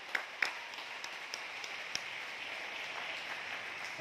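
A crowd clapping: a few sharp separate claps in the first half second, then an even patter of many hands clapping at a steady, moderate level.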